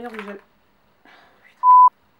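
A single loud censor bleep: a pure steady tone at one pitch, about a third of a second long, cutting in and out sharply near the end.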